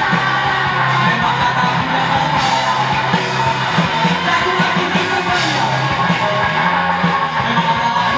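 Rock band playing live: electric guitars, bass guitar and a drum kit with cymbal crashes, and a singer's vocals over them.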